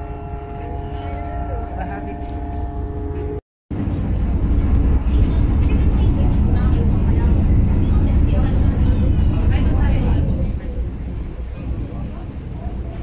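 Low engine rumble aboard a passenger ferry, with steady whining tones over it for the first few seconds. After a brief dropout the rumble comes back louder and stays heavy for several seconds, with people's voices in the background.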